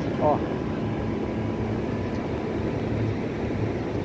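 Steady low rumbling outdoor background noise on an open beach, from surf and wind, with no distinct events.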